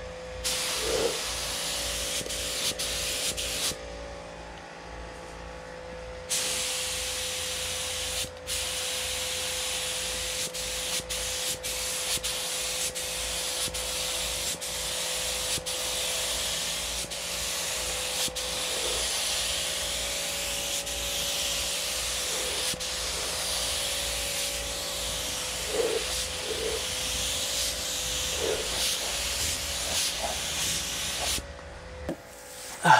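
Gravity-feed paint spray gun spraying a coat of paint onto a car body, a steady hiss of air and atomised paint. The trigger is let off for about two seconds a few seconds in, and there are brief breaks between passes.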